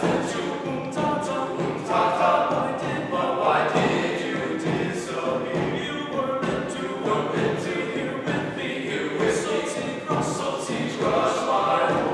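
A small group of men's voices singing together in harmony, phrase after phrase.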